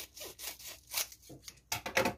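Scissors cutting across the top of a plastic bubble mailer: a run of short rasping snips, the loudest near the end.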